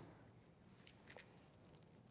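Near silence: room tone, with a few faint soft clicks from hands handling craft materials.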